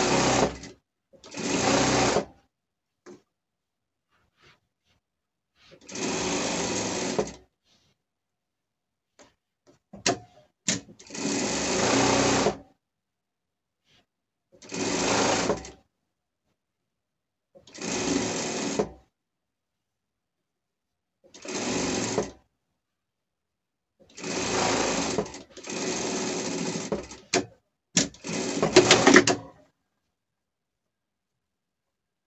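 Industrial single-needle lockstitch sewing machine topstitching fabric in about ten short runs, each a second or two long, starting and stopping with brief pauses and a few small clicks between them.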